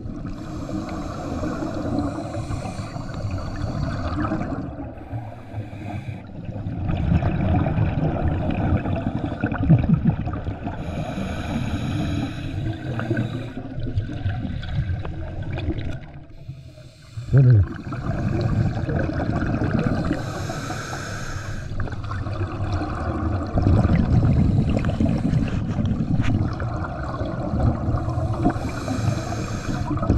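Scuba divers' exhaled air bubbling from their regulators, heard underwater: a burst of bubbling about every nine seconds over a steady low rumble of water movement. A short low thump just past halfway.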